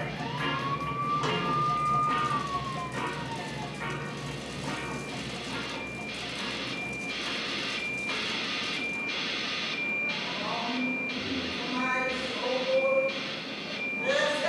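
Soundtrack of a documentary film, played over the room's speakers. It opens with a single siren wail that rises and falls, then settles into a regular pulse about once a second, each pulse carrying a short high beep, with faint voices near the end.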